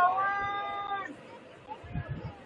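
A person's long, high-pitched shout, held on one pitch for about a second and then cut off, followed by low background noise.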